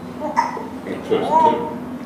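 Brief indistinct voice sounds, twice, from a person off the microphone, over a steady low hum.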